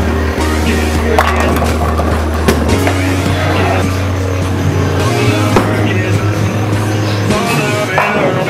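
Background music with a sustained low bass line that moves to a new note every two to three seconds, over a steady beat.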